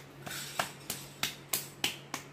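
A series of short, sharp clicks, about three a second, over a faint steady low hum.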